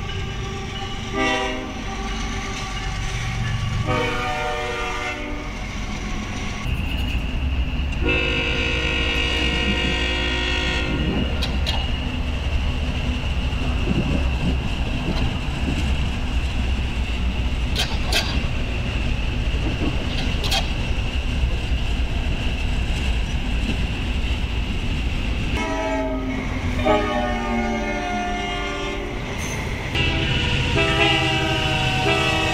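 Freight diesel locomotive horns: a short blast, a longer one, then a long blast about eight seconds in. A passing train follows, with a low steady rumble, a steady high whine and a few clicks. Another set of horn blasts begins near the end.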